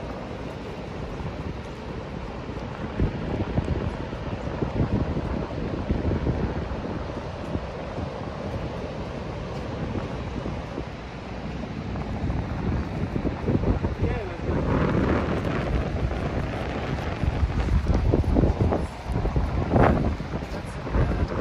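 Wind gusting on the microphone over a steady wash of breaking surf, with people talking close by near the end.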